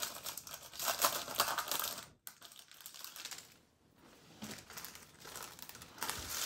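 Foil Pokémon card booster pack wrapper crinkling as it is pulled open by hand, busiest in the first two seconds, then only faint handling rustles.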